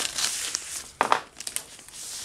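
Heavy paper, like wallpaper, being torn and crumpled off a cardboard box by hand: irregular crackling and rustling, loudest about a second in.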